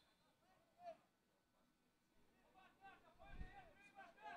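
Near silence with faint voices, off and on, and a soft low thump about three and a half seconds in.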